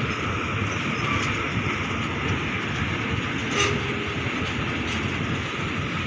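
Freight train of railway tank wagons rolling past, its wheels running on the rails in a steady rumble, with one brief click about three and a half seconds in.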